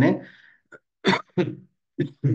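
A man clearing his throat in two short bursts about a second in, after the end of a spoken phrase.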